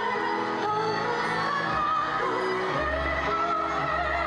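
A school symphony orchestra, mostly strings, playing sustained, slow-moving music with a singing voice over it.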